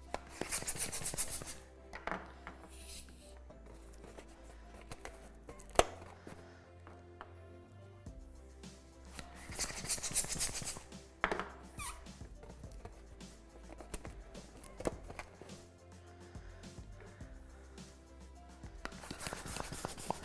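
Background music with a hand balloon pump hissing as it inflates small round latex balloons, in bursts about a second long near the start, around ten seconds in and near the end. A single sharp click a little before six seconds is the loudest moment.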